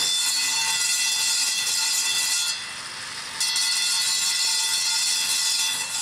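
A power tool running with a steady high-pitched whine, in two runs with a short break about two and a half seconds in.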